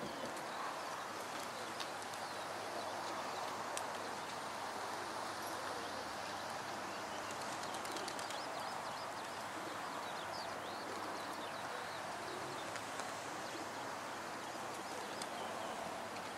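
Steady outdoor background noise with faint, scattered bird calls.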